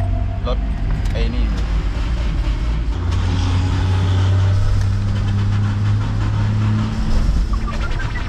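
An old vehicle's engine started and running with a steady low drone that grows stronger about three seconds in. It caught on the first try.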